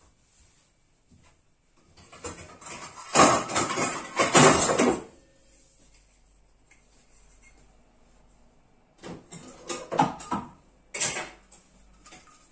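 Kitchen cookware handled out of view: a loud, scraping clatter lasting a few seconds, then quiet, then a quick run of metallic clinks and knocks near the end.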